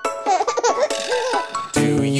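A baby giggling for over a second. Near the end, a cheerful children's song with a steady beat and bass starts up.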